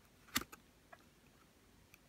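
A sharp click about half a second in, then a couple of fainter ticks: fingers and fingernail handling a flat ribbon cable as it is seated evenly in an open ZIF connector on a circuit board.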